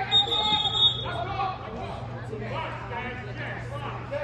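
A high, shrill referee's whistle blown once for about a second, with spectators talking around it.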